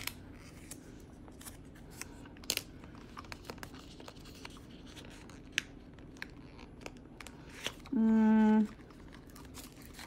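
Paper and clear plastic planner inserts rustling and crinkling as they are handled at the metal rings of a pocket ring planner, with scattered small clicks and taps. A short hummed "mm" about eight seconds in.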